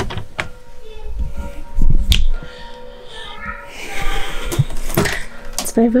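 Handling noise from clothes and a hand-held camera being moved: rustling and a few sharp clicks, with a heavy thump about two seconds in.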